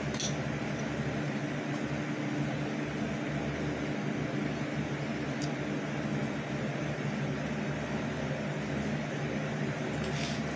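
Space heater running: a steady whir with a low, even hum.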